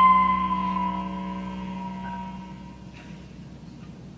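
An electric guitar's final note ringing out and dying away over about three seconds.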